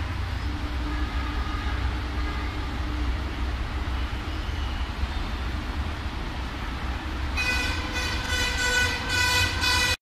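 A steady low rumble, then a loud horn starting about three-quarters of the way through and sounding in a string of short blasts.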